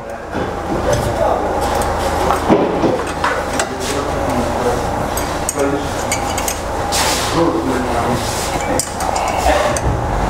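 Small metal clinks and clicks of a wrench working the locknut on a turbocharger actuator's adjusting rod, over a steady low hum and some muffled voices.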